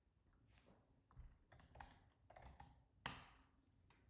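Faint typing on a computer keyboard: a scattered run of keystrokes, the loudest about three seconds in.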